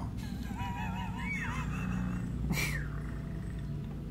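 Cartoon soundtrack: a warbling, honk-like creature call that wavers up and down in pitch for about the first two seconds, over a steady low hum, then a short falling swoosh about two and a half seconds in.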